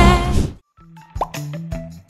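Singing with music that cuts off about half a second in, followed by a short cartoon-style plop sound effect with a quick rising pitch, among light clicks and soft tones.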